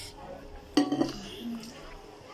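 Plates and cutlery clinking during a meal, with one sudden loud clatter about three-quarters of a second in that rings briefly.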